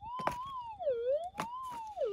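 Minelab GPX 5000 metal detector's audio tone dipping down in pitch and back up twice as the Sadie coil is passed over a target in the crevice, the detector's signal for the buried metal. A few sharp knocks come in under it.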